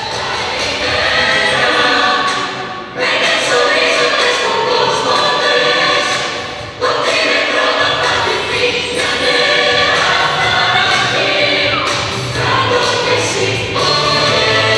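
Choral music from a film soundtrack, a choir singing with accompaniment. It drops away briefly about three seconds and again about seven seconds in, then cuts straight back in.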